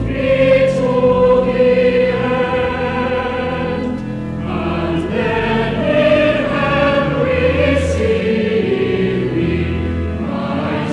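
Cathedral choir singing, one phrase ending about four seconds in and the next beginning.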